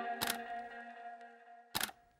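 The tail of background music, held tones fading out, with a camera-shutter click just after the start and another near the end.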